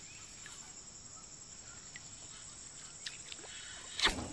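Quiet creek ambience: a faint steady insect hum, with a few small ticks about two and three seconds in.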